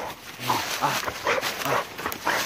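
A setter making short repeated sounds close to the microphone, about two or three a second, mixed with a man's brief voice.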